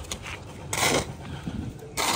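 A steel shovel scraping and knocking as mortar is mixed by hand on the ground, with one louder short scrape about a second in.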